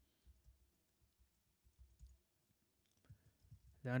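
Faint, irregular key clicks from typing on a computer keyboard.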